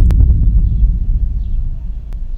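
Deep, loud bass boom sound effect that hits suddenly and slowly fades away, with a sharp click just after it starts.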